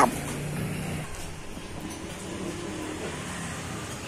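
A motor vehicle engine running steadily in general background noise.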